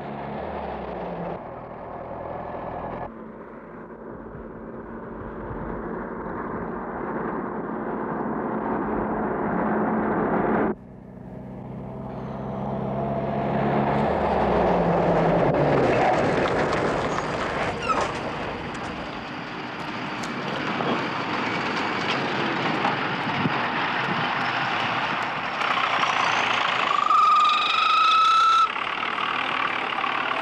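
Motor vehicle engines running and driving by, including an open-top jeep crossing a field, with the sound changing abruptly several times and building up after about eleven seconds. Near the end a steady high tone sounds for about a second and a half.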